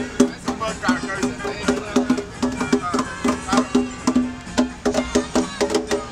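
A conga drum struck by hand in a steady, quick rhythm, alternating two low tones, with several voices talking over it.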